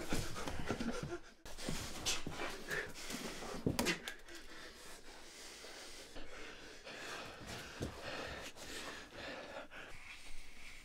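A man panting, breathing hard after a struggle. A few short knocks and rustles come in the first four seconds.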